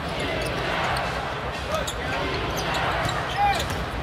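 A basketball being dribbled on a hardwood court over the steady murmur of an arena crowd.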